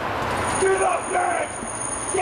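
Men's voices calling out over outdoor street noise, with a thin, high, steady tone starting about a quarter of the way in.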